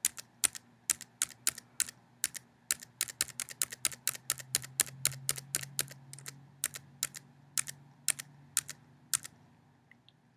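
Tab key on a computer keyboard pressed over and over, about three sharp key clicks a second, some 27 presses in all. The presses stop about a second before the end.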